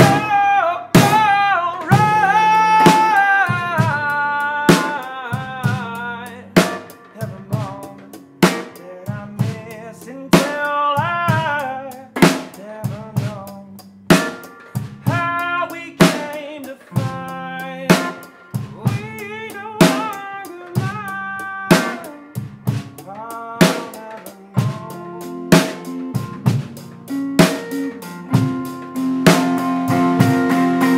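Live acoustic-guitar and drum-kit music, the drummer keeping a steady beat on kick, snare and rims. Over it a man sings long, wavering runs with vibrato.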